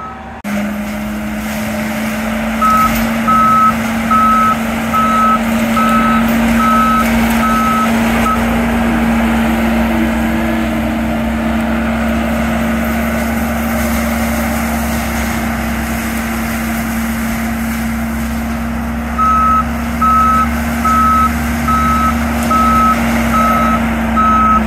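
John Deere compact track loader with a forest mulcher head running with a steady hum, its reversing alarm beeping about one and a half times a second from about three to eight seconds in and again over the last five seconds.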